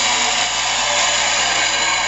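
MTH Chapelon Pacific O-gauge model steam locomotive giving a steady, even hiss through its onboard sound system.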